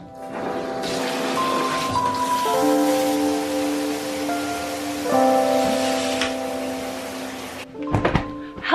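Shower water spraying into a bathtub, a steady hiss that starts about a second in and stops just before the end, under background music of long held notes that change every second or two.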